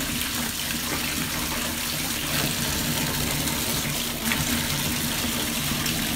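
Bathtub faucet running steadily, its stream pouring into a tub full of bubble-bath foam.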